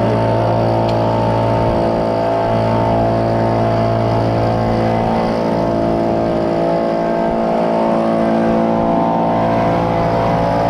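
Gas leaf blower running steadily at constant speed: an even engine drone on a strong low hum that barely changes in pitch.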